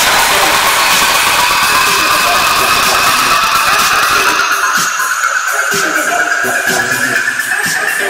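Electronic dance music at a build-up: a rising noise sweep climbs steadily in pitch, and the bass and kick thin out from about halfway.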